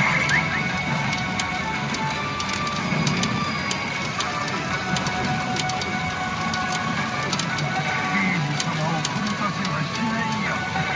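Pachinko machine music and effects playing steadily, over an irregular patter of sharp clicks from steel pachinko balls running through the machine.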